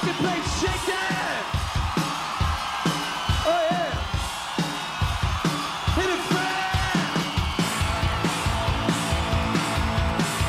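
Live rock band playing a steady drum beat while the singer yells to the crowd. Sustained electric guitar builds in during the second half.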